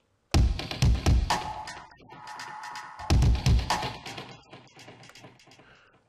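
Electronic dubstep beat playing back from a Mixcraft 6 project, with Acoustica Reverb added to one of its beat clips. Two groups of heavy bass-drum hits come about three seconds apart, with a held synth tone and long reverb tails fading between them.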